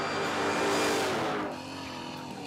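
Two drag cars, a Vauxhall Viva and a Holden Kingswood, passing at speed: a rush of noise that swells to a peak about a second in and then fades. Background music plays underneath.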